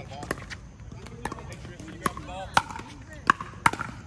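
Pickleball paddles hitting a plastic ball in a rally at the net: a string of about six sharp pops, the loudest ones in the second half.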